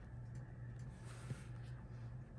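Quiet room with a steady low hum and faint handling sounds: fingertips rubbing on cardstock while pressing a small paper bumblebee into place, with one small tap a little over a second in.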